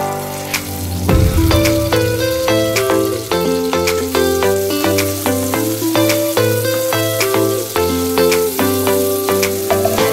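Onions, green peppers and tomatoes sizzling as they sauté in oil in a pot and are stirred, under background music with a melody and a steady beat.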